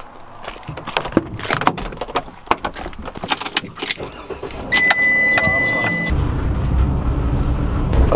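Clicks and knocks of someone getting into a Ram ProMaster van and putting the key in, then a steady high dashboard chime and the engine starting about six seconds in, settling into a steady low idle.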